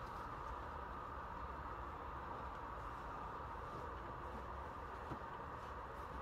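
Faint, steady background noise with no distinct events, apart from a single faint tick about five seconds in.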